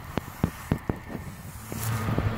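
A handful of short, faint clicks in the first second, over a quiet, steady outdoor background.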